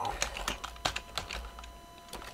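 Computer keyboard typing: a quick, uneven run of key clicks as a short line of assembly code is typed.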